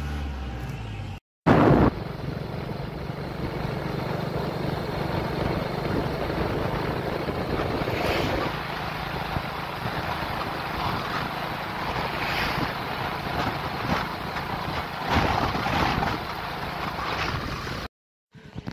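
Steady rushing wind and road noise on a handheld phone's microphone from a motorcycle riding at speed, swelling and buffeting irregularly. The sound cuts out briefly about a second in, then comes back at once.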